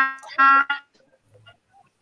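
A woman's voice drawing out a word or two at a steady pitch, then a pause of about a second with almost nothing heard.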